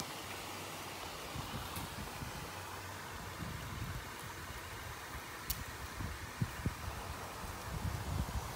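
Steady faint outdoor background hiss, with the phone microphone being handled among branches: light rustling, a sharp click about halfway through, and a few low bumps after it.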